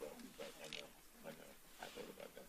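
Faint hearing-room sounds: low, scattered voices and shuffling as people get up from their chairs.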